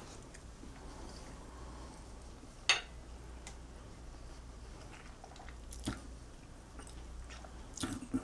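A man quietly chewing a forkful of pasta salad. A single sharp click comes a little under three seconds in, and a few softer clicks follow later.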